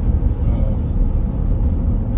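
Steady low road and engine rumble of a car driving at speed, heard from inside the cabin.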